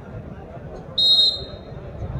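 Referee's whistle: one short, sharp blast about a second in, signalling the next serve in a volleyball match, over a steady murmur of an outdoor crowd.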